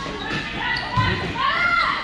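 Volleyball rally in a large gym: a dull thud of the ball being played about a second in, with players' voices calling out on court.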